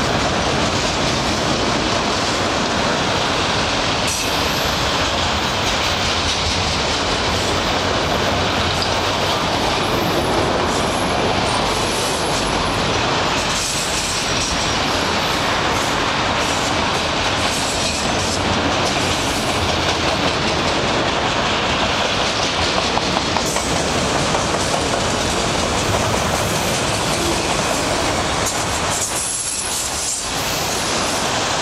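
Freight train's autorack cars rolling past close by: a steady, loud rumble of steel wheels on rail, with clacking as the wheel sets cross rail joints.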